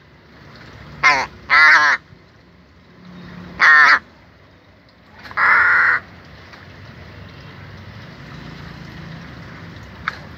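Caged crow giving four loud, hoarse caws in the first six seconds, the second and third close together and the last one harsher and noisier.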